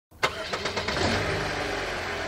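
Car engine starting: a sharp click, a quick run of cranking strokes, then the engine catches and runs steadily.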